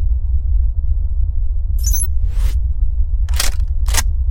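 Edited soundtrack of a steady deep bass rumble, with four short swoosh sound effects in the second half.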